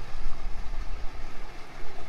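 Water gushing steadily out of a pool water slide's outlet into the pool, over a steady low hum.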